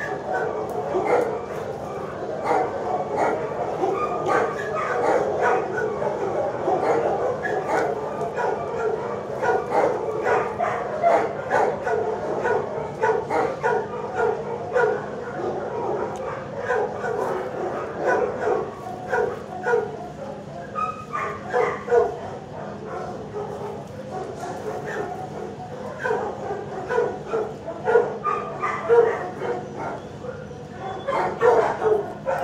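Many shelter dogs barking at once in a kennel block, a dense and unbroken run of overlapping barks.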